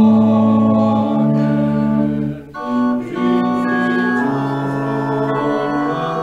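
Pipe organ playing a slow hymn in sustained chords, with voices singing along. A brief break between phrases comes about two and a half seconds in.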